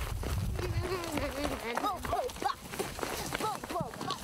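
Several people's footsteps on a stony dirt path, with a low rumble in the first second.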